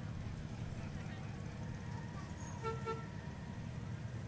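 A miniature train's horn sounds two short toots about two and a half seconds in, over a steady low rumble.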